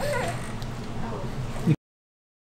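A toddler's short, high-pitched vocal sounds, babbling with pitch sliding up and down, over a steady low hum; the sound cuts off abruptly near the end.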